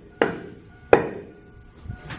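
Steel jet-drive shaft knocking against the crankshaft yoke as it is slid in and out by hand: two sharp metallic knocks about two-thirds of a second apart, each ringing briefly. The shaft slides freely, a sign that the engine angle causes no binding.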